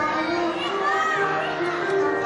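A group of young children singing, their high voices over instrumental backing music with held notes.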